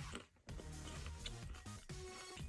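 Soft background music with steady low notes. It briefly cuts out a fraction of a second in, then carries on.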